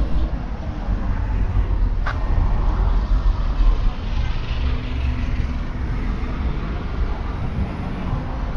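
Outdoor street ambience dominated by a low, uneven rumble, with faint voices of passers-by and a single sharp click about two seconds in.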